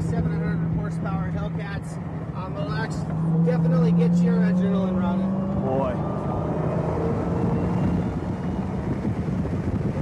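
Car engine heard from inside the cabin while driving on a race track: a steady drone that climbs a little in pitch and gets louder about three seconds in, then eases back after about six seconds, over road and wind noise.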